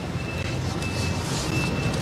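Steady low rumble and hiss of background noise, with a faint high-pitched beep coming and going in short pips.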